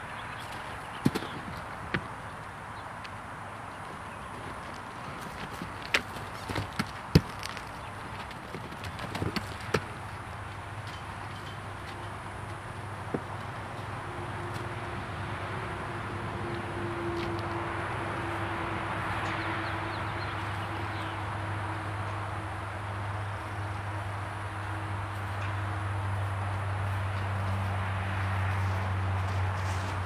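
Horse hooves knocking on wooden logs, a few scattered sharp strikes in the first ten seconds or so as the horse steps onto the log obstacle. From about ten seconds in, a steady low hum comes in and slowly grows louder.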